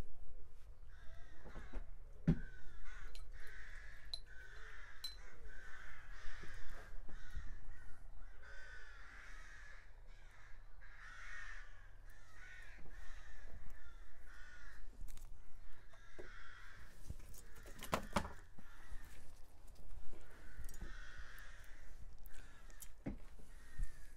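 Crows cawing repeatedly, one harsh call every second or two, with a few sharp knocks, the clearest about 18 seconds in.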